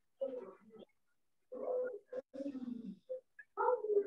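An animal calling in four short bouts, one falling in pitch.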